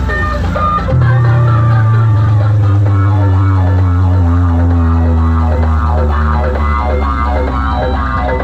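Music played loud through a newly set-up DJ sound rig of stacked speaker boxes and horn loudspeakers. About a second in, a deep steady bass drone comes in under the melody.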